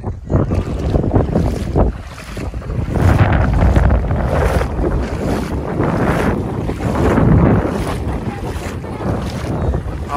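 Wind blowing hard across the microphone in uneven gusts, with a low rumble, over the wash of shallow sea water. The gusts ease briefly about two seconds in, then pick up again.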